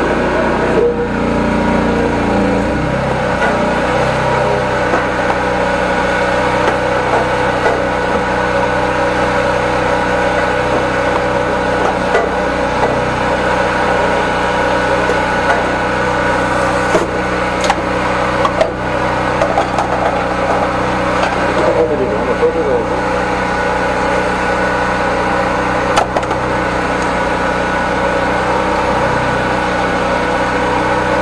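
High-pressure drain-jetting machine's engine and pump running steadily, a constant hum with several steady tones.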